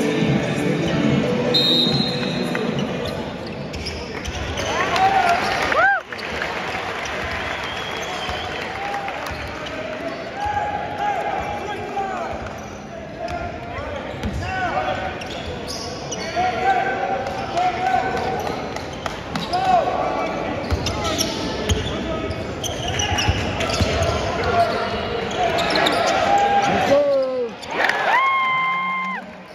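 Basketball game on a hardwood court: the ball bouncing as it is dribbled and many short sneaker squeaks, over a steady murmur of crowd voices.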